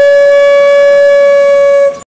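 A loud, steady held note from a blown wind instrument, one pitch with a rich set of overtones, cutting off suddenly near the end.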